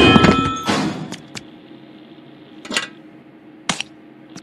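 Cartoon crash sound effect: a loud impact with a metallic clang ringing out and fading over the first second, then a few short sharp clicks.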